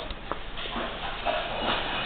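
Wilton 4400A 12-inch disc sander running steadily, with shuffling footsteps and a few light clicks over it.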